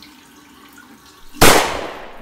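Tap water running into a bathroom sink, then about one and a half seconds in a single loud bang that dies away over about a second.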